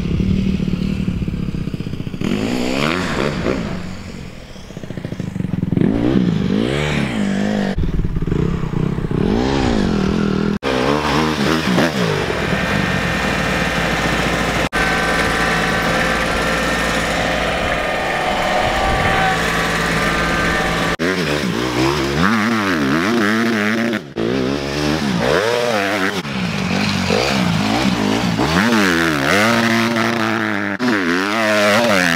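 Dirt bike engine revving up and down as it is ridden, pitch rising and falling with each burst of throttle. In the middle third a Kubota tractor's engine runs at a steady pitch instead, before the dirt bike revving returns.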